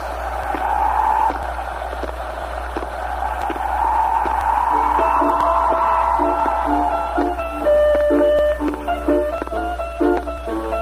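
Instrumental introduction of a 1959 Korean trot record: a rushing noise swells and fades for the first half, then a melody of held instrumental notes comes in about five seconds in, over a steady low hum.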